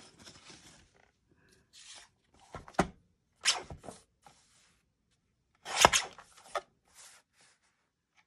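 A Fiskars paper trimmer and a piece of card stock being handled on a craft table: a few short scrapes and clicks of plastic and paper, the loudest about six seconds in.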